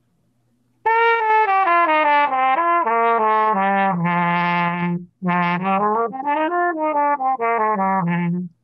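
Trumpet played through a Huber reproduction of the vintage Shastock-style Mega mute, in two short phrases. Each phrase steps down into the low register and ends on a held low note, showing the low register working on this mute.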